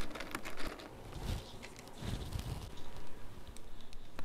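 Fingers picking clay pebbles and tearing algae-covered rockwool away from a plant stem in a hydroponic pot: a run of small scattered clicks and crinkles with a few soft low thumps.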